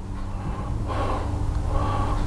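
A man breathing out audibly, over a low steady hum.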